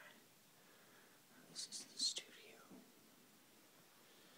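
Faint whispering: a few short hissed sibilants about halfway through, over quiet room tone.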